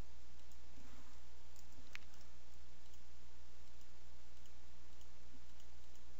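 A few faint clicks of a computer mouse and keyboard, the clearest about two seconds in, over a steady low hum.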